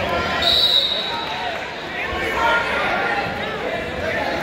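Many voices chattering in a large gymnasium, echoing, with a short whistle blast about half a second in.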